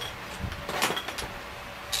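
A few faint clicks and light handling noise from hand tools being picked up and moved on the bench.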